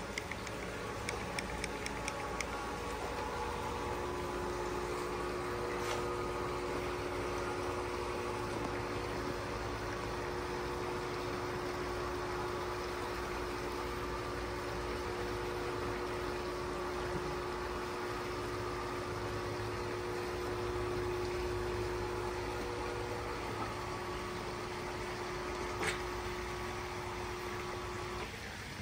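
Motorized roll-up hurricane screens running as the screens roll up: a steady motor hum with several fixed pitches. One pitch stops a few seconds before the end. There is a faint click about six seconds in and another near the end.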